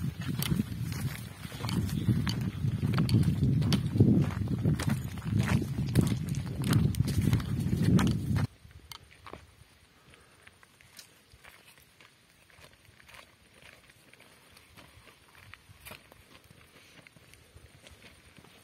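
Footsteps crunching on a gravel path, with a loud uneven rumble on the microphone for the first eight seconds or so. The sound then drops abruptly to faint, irregular steps on gravel.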